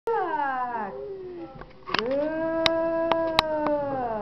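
Two long drawn-out vocal calls. The first slides down in pitch over about a second and a half. The second starts about two seconds in, holds one pitch and falls away at the end, with a few sharp clicks over it.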